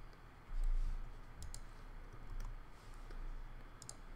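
A few scattered clicks of computer keys, such as the Enter key sending a typed terminal command, with a dull low thump about half a second in.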